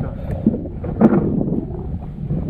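Wind buffeting the microphone as a steady low rumble, with a couple of short knocks about half a second and a second in.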